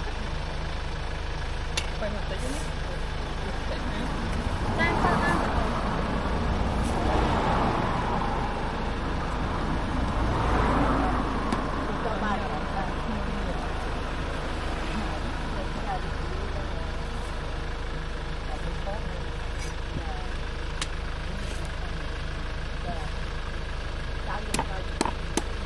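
Outdoor traffic ambience: a steady low rumble, with vehicles passing by and swelling twice in the first half, and voices in the background. A few faint knife taps on a wooden chopping block are heard as sugar palm fruit is trimmed.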